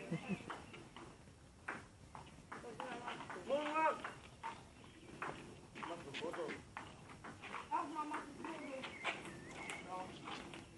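Table tennis ball clicking off paddles and the table at irregular intervals during a round-the-table game, over players talking, with a loud drawn-out shout about four seconds in.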